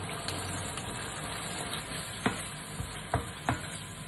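Diced tomatoes sizzling in hot oil in a stainless steel frying pan as they are stirred in, with a few sharp knocks of a utensil against the pan, one about halfway and two near the end.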